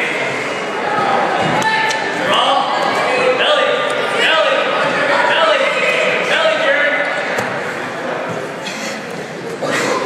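People shouting from the sidelines of a wrestling bout in an echoing gymnasium, with a few thumps of bodies hitting the wrestling mat.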